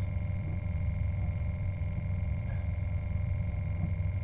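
A steady low engine-like drone with a constant thin high whine over it, unchanging throughout.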